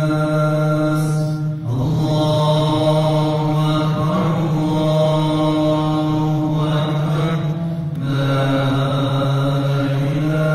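A man's solo voice chanting in long, held melodic phrases, amplified through a microphone. It breaks off briefly for breath about one and a half seconds in and again near eight seconds.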